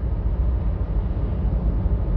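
Steady low rumble with a fainter hiss above it, even throughout and with no distinct events.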